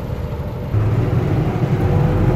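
A bus's diesel engine running while the bus drives, heard from inside the cab; the engine sound gets louder and fuller under a second in.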